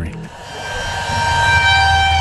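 An eerie transition sound effect: a low drone beneath a chord of steady high tones, swelling louder over the first second and a half and then holding.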